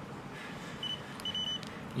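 AlcoPatrol PT100P handheld breath analyzer beeping: a short high beep about a second in, then a longer one about half a second later.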